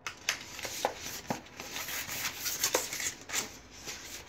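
Thin card box flaps being folded and pressed into place by hand: rustling and rubbing of card against card and the cutting mat, with several sharp crackles as the creased board bends.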